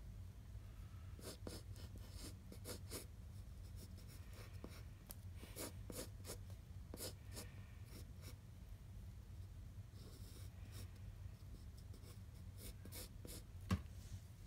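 Wooden pencil sketching on a sheet of paper: runs of short scratchy strokes, some in quick succession, over a faint steady low hum.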